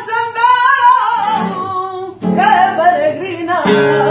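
A woman singing a sevillana with a Spanish guitar accompanying her; her held, ornamented sung line fills the first half, and a strong strummed chord comes near the end.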